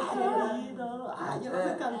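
Several voices of a small group talking and murmuring over one another, fairly quiet.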